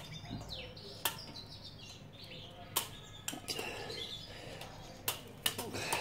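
Faint ticks and clicks of steel wire against the bars of a bird cage as the wire is pulled taut through the grille: about six sharp ticks spread through, with faint high chirps underneath.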